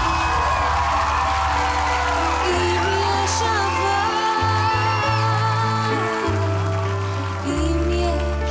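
A young woman singing a slow Hebrew ballad solo into a microphone, backed by a live band. Her held notes waver with vibrato over steady, slowly changing bass notes.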